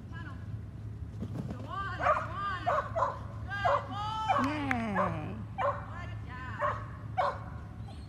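Dog barking in a quick string of about ten high-pitched yips, with one longer drawn-out yelp near the middle.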